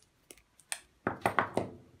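Light clicks, then a quick run of four sharp knocks and clatters about a second in, from the wiring and plastic parts of an electric shower's backplate being handled and pulled apart.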